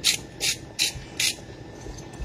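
Hand-twisted spice grinder cranked in short rasping turns, about two and a half a second; four turns, then it stops about a second and a half in.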